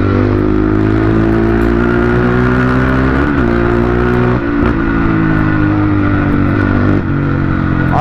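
Honda CRF450's single-cylinder four-stroke engine running steadily under the rider, its note sinking slowly as the bike rolls along. There is a short blip of revs about three seconds in and a smaller one a little later.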